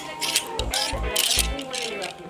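Hip-hop track with a heavy bass beat and rapped vocals, over the scraping and clicking of clothes hangers being pushed along a store rack, loudest about a second in.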